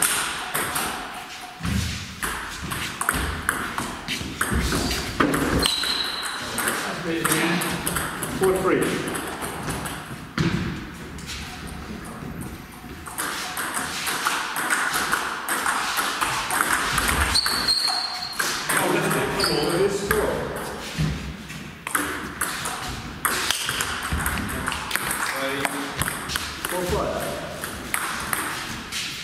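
Table tennis ball being hit back and forth in rallies: many sharp clicks of the celluloid ball off the bats and bouncing on the table, with people talking in the background.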